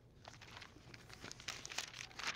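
Faint, scattered rustling and crinkling of thin Bible pages being leafed through to find a passage, growing a little busier in the second half.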